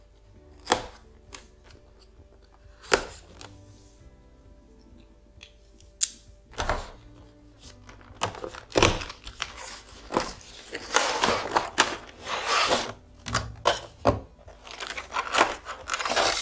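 A knife blade slitting the seal on a cardboard headphone box, with a few sharp clicks and taps. From about eight seconds in, a near-continuous rustling and crinkling of cardboard and plastic as the box is opened and the clear plastic tray is slid out.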